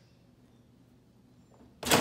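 Near silence while a clamshell heat press is held shut, then near the end one loud, sharp clunk as the press handle is lifted and the press springs open.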